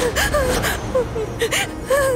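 A woman sobbing: short, wavering whimpering cries broken by gasping breaths.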